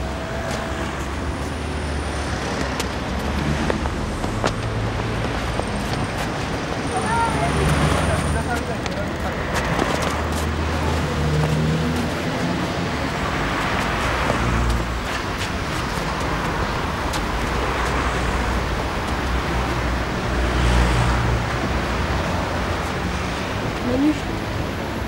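City traffic noise: a steady wash of road noise with a low, uneven rumble.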